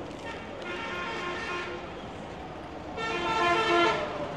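Vehicle horns sounding twice over background traffic noise: a short steady blast about half a second in, then a louder one of about a second near the end.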